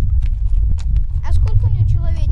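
Horse hooves clip-clopping at a walk on a stony path, about three steps a second, over a steady low rumble.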